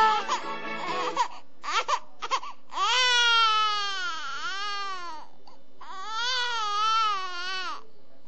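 An infant crying: a few short whimpers, then two long wailing cries that rise and fall in pitch. The tail of the background music fades out in the first second.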